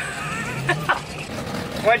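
Voices talking in the background over a low steady hum, with a clearer voice near the end.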